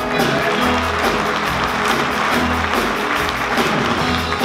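Live rock-and-roll band playing a steady instrumental vamp, with the audience applauding over it.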